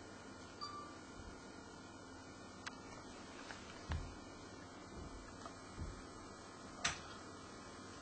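Quiet room with a faint steady hiss, broken by a few soft low thumps and small clicks, with one sharper click about seven seconds in.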